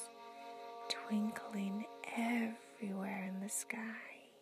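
Soft, whispery woman's voice in short phrases over gentle, steady ambient background music.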